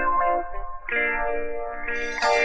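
Instrumental intro of a 1977 soul record: held chords that drop away about half a second in, then a new chord comes in just before a second in.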